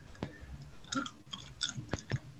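Faint, scattered clicks and light taps, about five in two seconds, as of someone handling a device.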